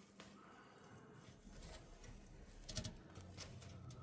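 Near silence: room tone, with a few faint brief clicks a little under three seconds in.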